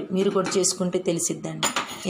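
Steel kitchen utensils clinking: a sharp clink about two-thirds of a second in and a few more near the end, as a steel pot is handled, under a woman's voice.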